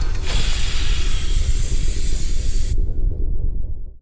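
Produced sound effect: a deep rumble with a loud steam-like hiss over it. The hiss stops abruptly near three seconds, leaving the rumble, which cuts off suddenly at the end.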